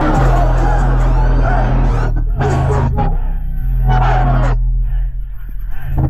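Loud rap music over a concert sound system, dominated by deep, sustained bass notes that step in pitch, with a crowd shouting and yelling over it.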